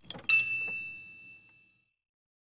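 A bright chime sound effect: a couple of quick clicks, then a ding that rings on one clear high note with fainter overtones and fades out over about a second and a half.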